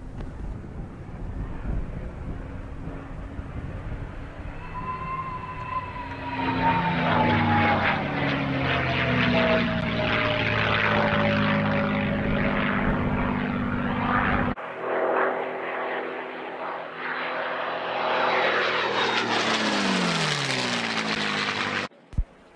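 P-51 Mustang's Merlin V-12 engine and propeller running through a pull-up, with a whistle from its open gun ports sliding slowly down in pitch over several seconds. After an abrupt cut, another Mustang's engine passes by, its note falling sharply in pitch, with no such whistle.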